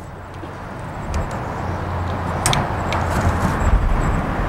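Low steady rumble of a vehicle engine running, slowly growing louder, with a few small metallic clicks of brass hose fittings being handled as the assembly is coupled to a tyre valve stem.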